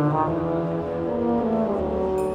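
Large high-school wind band playing a slow passage, the brass holding sustained chords with the low brass prominent.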